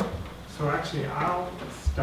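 A man's voice says a few words, and near the end there is a single low thump from a chair being sat in.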